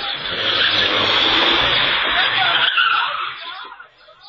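A car driving past close by, a loud rush of engine and tyre noise that swells and then fades over about three seconds.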